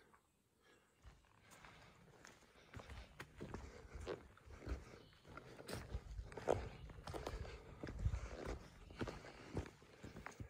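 Quiet, uneven footsteps of a hiker walking a forest trail, starting about a second in, with low rumble from the handheld camera.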